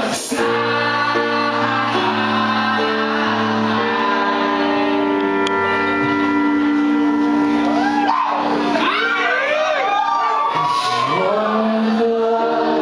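Live band music with a male lead singer. Long held notes carry the first part, then the voice moves through a sliding, wavering run of notes about eight seconds in before settling back into held notes.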